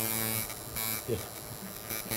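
Electric tattoo machine buzzing steadily as the needle works on skin.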